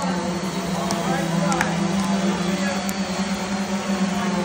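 Indistinct chatter of several voices over a steady low hum.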